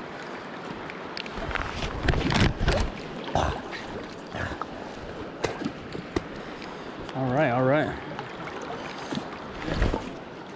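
River current rushing and lapping close around a wading angler, with irregular louder surges of splashing water against the microphone about two seconds in and again near the end. A short wavering voice is heard about seven seconds in.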